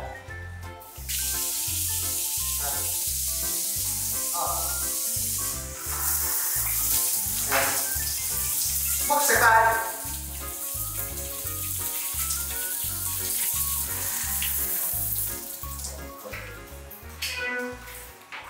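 Shower running: a steady hiss of spraying water that starts about a second in and stops near the end.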